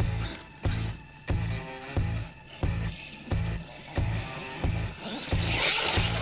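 Background music with a heavy, steady bass beat, about three beats every two seconds.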